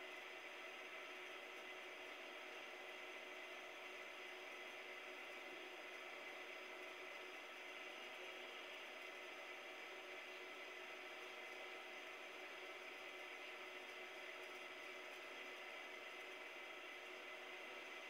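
Faint, steady hiss with a few thin steady tones under it: room tone.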